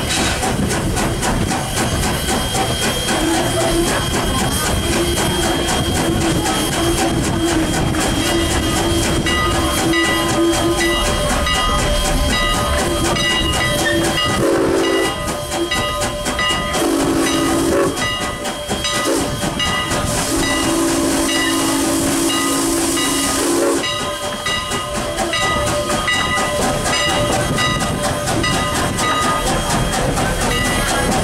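Canadian National No. 89, a 2-6-0 steam locomotive, running with a steady hiss of steam over the clatter of the train on the rails. Its whistle sounds faintly early on, then gives a short blast, a second blast and a longer blast of about three seconds.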